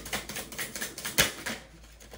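A deck of tarot cards being shuffled by hand: a quick run of card flicks and clicks, with one louder tap a little over a second in, after which the shuffling stops.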